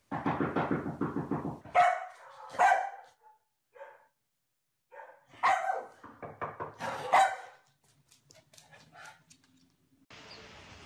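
Komondor barking: a quick pulsing run at first, then loud barks in two groups.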